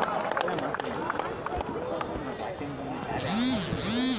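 Distant men's voices calling and shouting, none close, with a brief hiss near the end.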